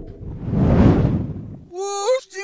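A whoosh sound effect from a logo intro swells up and fades away over about a second and a half. Near the end a pitched electronic tone starts, gliding upward.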